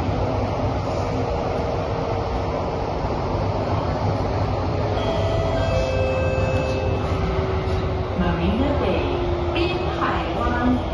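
Cabin noise of an MRT metro train running between stations: a steady rumble of wheels on rail. About halfway in, thin steady whining tones join it, and near the end a tone swoops down and back up.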